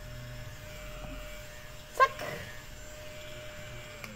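Small handheld desk vacuum cleaner running with a steady, thin hum as it is pushed over a table, sucking up pencil shavings. The hum dies away near the end.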